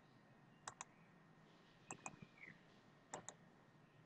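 Computer mouse clicking: three quick double clicks about a second apart, over near silence.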